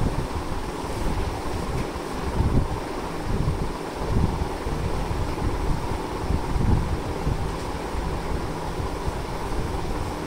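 Wind noise buffeting the microphone: a low, uneven rumble that swells and falls in gusts.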